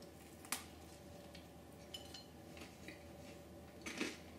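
A crunchy bite into crisp thin pizza crust about half a second in, then quiet chewing with a few small crackles.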